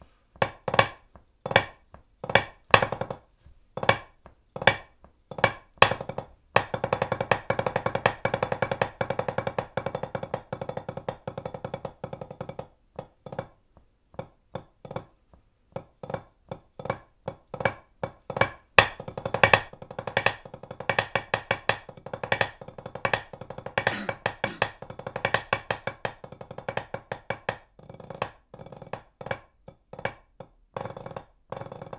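Rudimental snare drum solo played with White Hickory parade sticks on a rubber practice pad. It opens with single accented strokes a little over one a second, then a sustained roll of several seconds, then quicker passages of rolls broken by accents.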